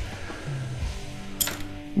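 Quiet background music with held notes, and one sharp click about one and a half seconds in.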